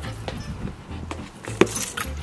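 A large rubber dog ball kicked once: a single sharp thud about one and a half seconds in, with a few faint clicks before it.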